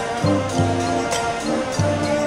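Marching band playing: brass chords over repeated low brass notes, with a bright cymbal crash about once a second.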